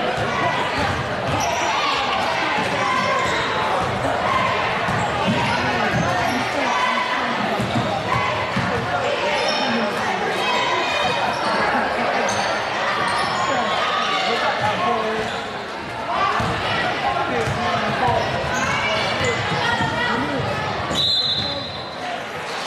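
Basketball being dribbled on a hardwood gym floor during play, with indistinct voices of players and spectators echoing through the hall. A referee's whistle blows briefly near the end.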